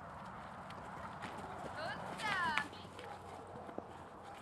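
A dog running over snow with a few light knocks and footfalls, and about two seconds in a short, loud cry that falls in pitch.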